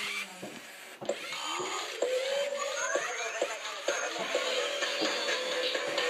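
Robosapien V2 toy robot playing its built-in dance music through its small speaker. A rising electronic sweep comes about a second in, then a steady tune with a beat about twice a second.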